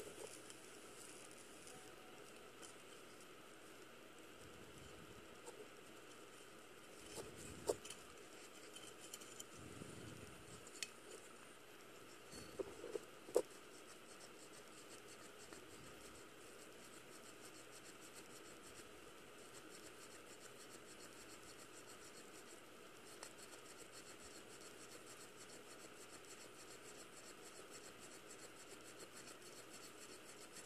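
Faint light scratching and a few small sharp clicks as thin wire cleaning brushes are worked through the passages of a dirty Nikki carburetor body. The sharpest clicks come about eight seconds in and again around thirteen seconds in, over otherwise near-silent room tone.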